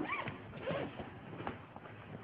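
Faint handling sounds, with a zipper-like rasp and a few small ticks, as a copy of the DSM-IV is fetched.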